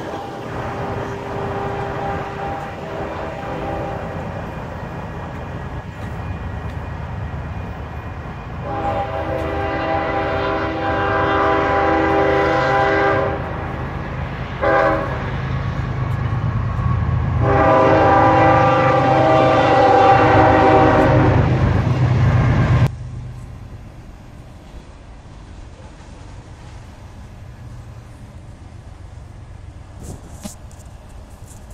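Multi-note air horn sounding a chord: a long blast, a brief one, then another long blast, over a steady low engine rumble. Everything cuts off suddenly a little over 20 seconds in, leaving a quieter even noise.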